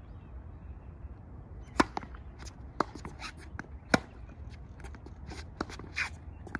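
Tennis balls being hit on a hard court during a rally. Sharp pops of racket strings striking the ball come about two seconds apart, the loudest near two seconds in and near four seconds in, with fainter knocks of ball bounces and the far player's hits between them.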